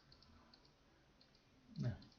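A few faint computer mouse clicks early on while handwriting is drawn onto the on-screen chart, then a short spoken sound near the end.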